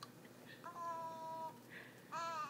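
A baby cooing: one long, even-pitched coo lasting about a second, starting a little over half a second in.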